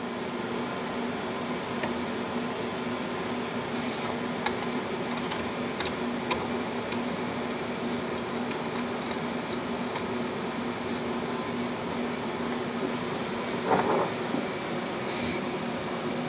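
Steady hum of a shop fan, with a few faint metallic clicks from a wrist pin bolt and tool being handled at an aluminium piston and connecting rod, and a brief louder scrape about 14 seconds in.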